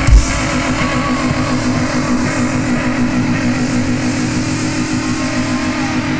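Live rock band holding one sustained, ringing electric-guitar chord after the drums stop, the chord held steady until it breaks into sliding notes right at the end.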